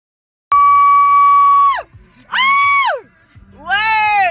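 A person's high-pitched voice gives three loud shrieking cries. The first is held level for over a second and then drops, the second is shorter and arched, and the third rises and falls near the end.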